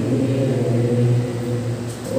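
A man's voice holding one long, low chanted note over an amplified microphone, steady in pitch and easing off just before the end.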